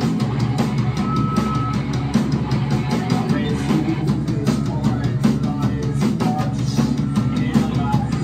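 Live rock band playing loud and dense: a drum kit keeping a fast beat under distorted electric guitars, without a break.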